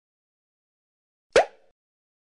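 A single short pop sound effect with a quick upward pitch sweep, about a second and a half in.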